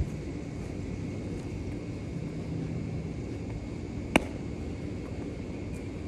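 Steady outdoor background noise with a faint low hum, and a single sharp knock about four seconds in.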